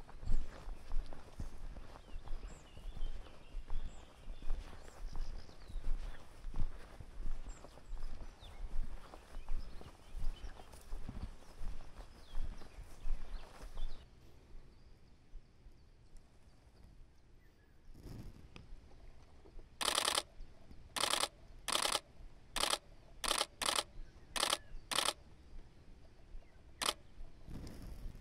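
Footsteps walking through mown grass at a steady pace, about two steps a second, for the first half. After a quiet pause, a Nikon D4s DSLR's shutter fires in short rapid bursts: about eight bursts over five seconds, then one more near the end.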